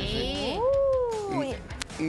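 A single long meow-like call that rises and then falls in pitch, with a faint click near the end.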